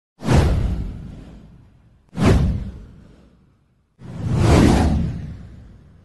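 Three whoosh sound effects about two seconds apart, each starting suddenly and fading away over a second or two. The third swells up more slowly before it fades.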